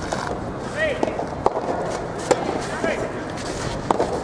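Soft tennis rubber ball struck by rackets during a doubles rally: three sharp pops, two close together in the middle and one near the end. Short shouted calls from the players come between the hits.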